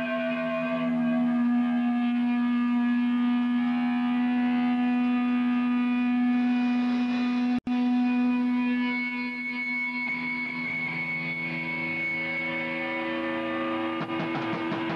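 Sustained electric guitar notes droning and ringing through effects, several held tones slowly changing over a steady low drone, with no drums. The sound cuts out for an instant about halfway through.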